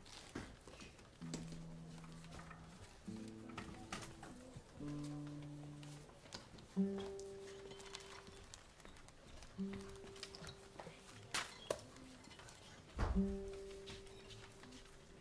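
A musical instrument playing a slow series of separate held notes, each about one to two seconds long, with several sharp knocks and handling noises between them.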